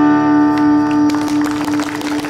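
A song's final chord on acoustic guitar rings out under a long held note. Audience applause starts about a second in.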